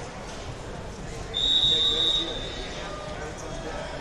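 A referee's whistle blown once, a single steady high tone held for about a second, heard over the murmur of voices in a large hall.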